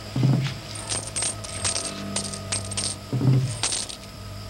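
Light metallic clinking: a quick, uneven run of small high ringing taps, like coins knocking together, with a short low sound near the start and another about three seconds in.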